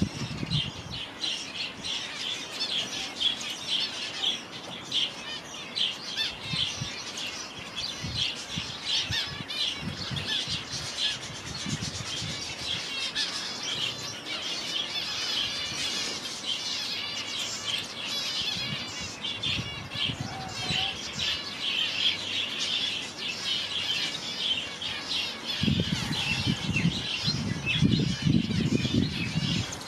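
A flock of small aviary parrots chirping and chattering continuously, a dense high twittering, with low thuds now and then, heaviest near the end.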